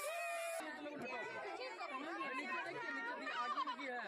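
Many people talking over one another in a close crowd, with an abrupt change in the sound about half a second in.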